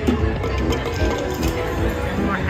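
Huff n' More Puff slot machine playing its bouncy free-games bonus music, with a few short clicks mixed in.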